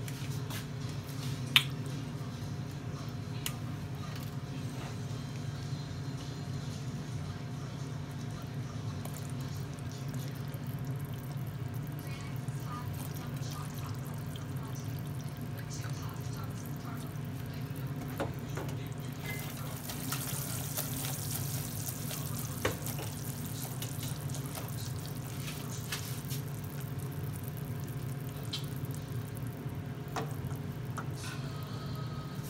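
Sugar syrup boiling at about 300 degrees, the hard-crack stage, in a stainless pot: small pops and bubbling over a steady low hum. There is a sharp click about a second and a half in, and a brighter hiss comes in about two-thirds of the way through.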